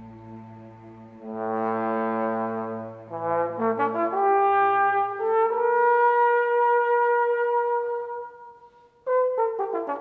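Solo trombone playing a melodic line. A soft low note swells into a phrase that climbs in quick steps to a long held high note. That note fades almost to nothing, and a new phrase starts suddenly about a second before the end.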